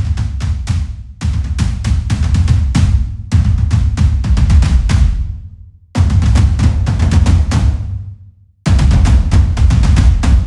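Heavily processed hybrid drum samples from the Colossal Hybrid Drums library play fast, dense phrases with a heavy low end, each a couple of seconds long with brief breaks between them. The tape-emulation Warmth control is turned up to near full, pushing tape saturation onto the whole drum sound.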